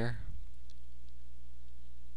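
Steady low electrical hum on the recording, with two faint clicks about half a second and a second in.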